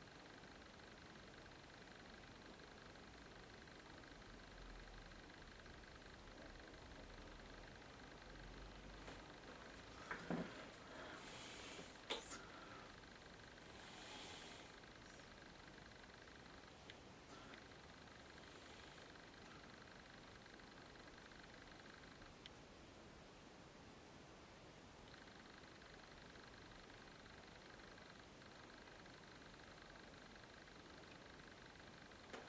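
Near silence: room tone with a faint steady high whine, broken by a few brief faint noises about ten to twelve seconds in.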